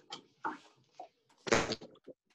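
Scattered small clicks and rustles, with a louder, fuller bump or rustle about a second and a half in, and a faint steady hum underneath.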